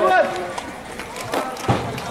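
Footsteps and handling knocks from a handheld camera carried quickly over dirt ground, with a couple of dull thuds near the end. A man's voice is heard briefly at the start.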